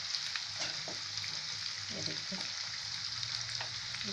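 Chopped onion sizzling in hot oil in a non-stick kadai while a wooden spatula stirs it, with a steady hiss and scattered light scrapes and taps from the spatula. The onion is being only lightly sautéed.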